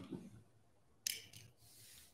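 Faint handling sounds of fabric being moved on a stage floor: a soft low bump, then about a second in a crisp rustle, with quieter rustling after it.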